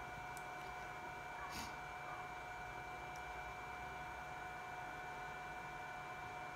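A mains battery charger running steadily with a faint, even high-pitched whine as it charges a 12-volt AGM battery; a couple of faint ticks early on.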